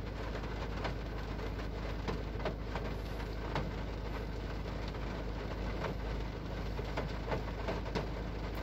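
EA189 1.5 TDI four-cylinder diesel engine idling steadily, heard from inside the car's cabin.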